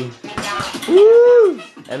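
A quick clatter of punches on a small punching bag, then a person's long rising-and-falling "ooh" of approval, the loudest sound here.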